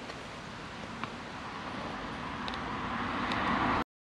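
Road noise of a passing vehicle, a steady rush that grows gradually louder and then cuts off suddenly near the end.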